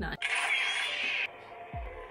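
Neopixel lightsaber igniting from its sound board: a sudden noisy ignition rush lasting about a second that cuts off abruptly, leaving the blade's steady low hum.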